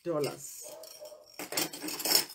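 Metal costume jewelry (earrings and pendants) clinking and jangling as it is handled in a pile on a table, with a cluster of sharp clinks in the second half.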